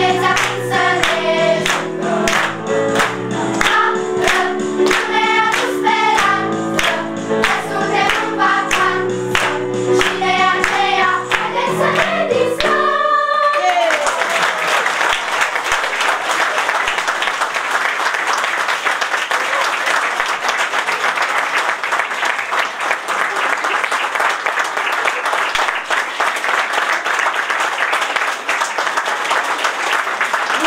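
A group of young singers sings a children's song over accompaniment with a steady beat of about two strokes a second. The song ends about halfway through and is followed by long, sustained applause.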